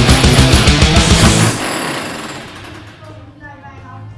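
Power demolition hammer chiselling up a floor: loud, rapid, even pounding that cuts off about a second and a half in. Faint voices follow.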